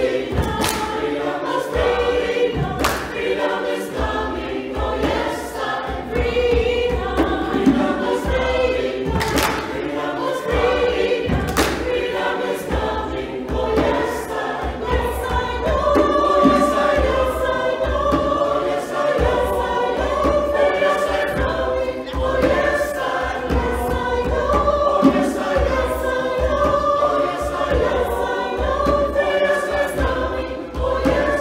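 Mixed church choir of men and women singing a gospel song in parts, with the voices sustained and swelling.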